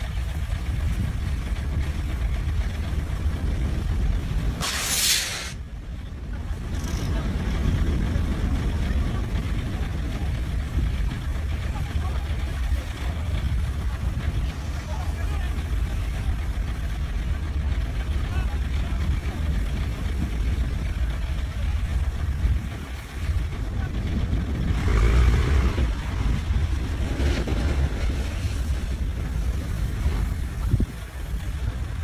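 A steady low rumble under men's voices calling out on the shore, with a short sharp hiss about five seconds in and louder voices near the end.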